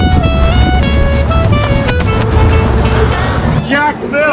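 Background music with a steady beat and a melody that steps from note to note. It cuts off suddenly about three and a half seconds in, giving way to men's voices in the street.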